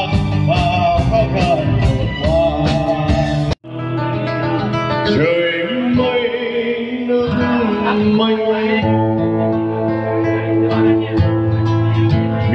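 A man singing into a microphone over a live band of bass guitar, drums and guitar. About three and a half seconds in, the sound cuts off abruptly to a different performance: a man singing over a strummed acoustic guitar with keyboard.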